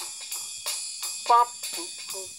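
A small drum kit played in a steady beat, cymbal ringing over the drum strokes, with a voice saying "pop" about a second in. It is heard as a TV soundtrack played back through computer speakers.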